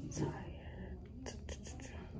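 Soft whispering, with a few light clicks and rustles about a second in.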